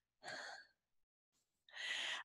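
Two faint breaths from a speaker pausing between sentences, the second a short intake of breath just before speech resumes.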